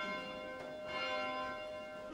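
Church bells ringing, a new stroke about every second, each ringing on under the next.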